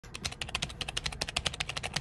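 Rapid computer-keyboard typing, a quick even run of key clicks at about ten a second that stops abruptly.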